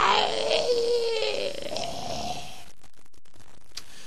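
A person's drawn-out vocal sound, continuing a laugh, held on one wavering pitch and fading out about two and a half seconds in. Then faint hiss with scattered clicks.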